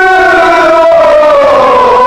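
Nauha (Shia lament) recitation: a voice holds one long sung note that slides slowly down in pitch.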